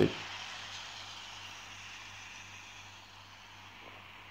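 Faint city street ambience with a steady hiss of traffic, slowly fading, over a faint low hum.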